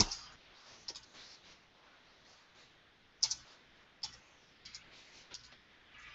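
Computer keyboard being typed on: a few scattered, faint key clicks at an uneven pace, the loudest a little over three seconds in.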